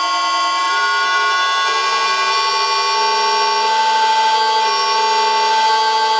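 Vintage lathe running under an electric motor driven by a VFD through a belt: a steady whine of several tones that climbs slightly in pitch as the drive is stepped up toward 40 Hz and the spindle speeds up from about 150 toward 190 rpm.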